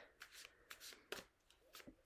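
Faint, soft flicks and rustles of a tarot deck being handled in the hands, a few brief ones spread through the moment.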